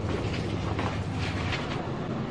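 A small 12 V DC worm water pump running with a steady low hum, under load as it lifts water up a hose to the first floor. A few footsteps on concrete stairs knock over it.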